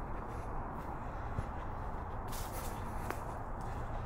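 Footsteps on a dirt forest trail scattered with fallen leaves, at a steady walking pace over constant low background noise. There is a brief louder crunch a little past the halfway point.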